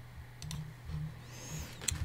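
A couple of faint computer clicks over a low steady hum.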